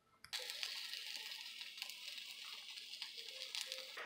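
A buttered sandwich frying in a pan, a faint steady sizzle that starts after a split second of silence.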